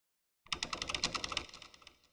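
A rapid run of keyboard-typing clicks, about a dozen a second, starting about half a second in and fading away near the end.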